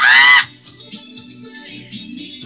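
A woman's short, very high-pitched excited squeal lasting about half a second, rising then falling in pitch, with the music video's song playing quietly underneath.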